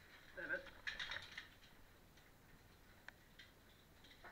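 Faint clinks and scrapes of caving gear as a caver moves, clustered around a second in, with a single sharp click about three seconds in. A brief human voice sound comes just before the clinks.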